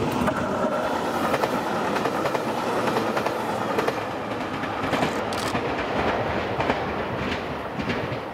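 Nanpu limited express diesel multiple unit passing close by, its wheels clattering over the rail joints. The sound fades as the train pulls away near the end.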